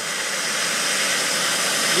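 Wet/dry shop vacuum running steadily with an even hiss as it pulls suction through a laser tube's coolant lines to drain them.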